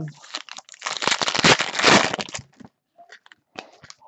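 Crinkling and crackling of trading cards and their packaging being handled close to the microphone, a dense burst lasting about two seconds.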